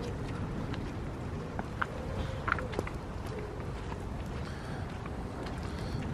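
Steady low outdoor background rumble, with a few faint clicks scattered through the middle.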